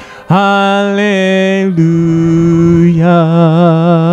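Congregation singing a hymn a cappella: long held notes with vibrato, a short breath at the start and a step down in pitch about halfway through.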